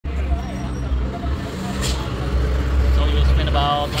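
A vehicle engine idling, a steady low rumble, with a person starting to talk near the end.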